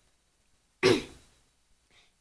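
A child clearing their throat once, a short burst about a second in that fades quickly.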